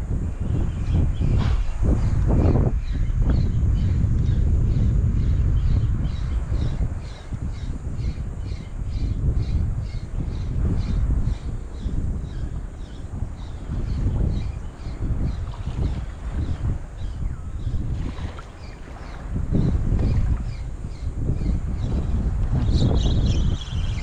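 Wind buffeting the microphone, the loudest sound, while a spinning fishing reel is cranked with a steady ticking of about two to three clicks a second as a lure is retrieved; the ticking stops near the end.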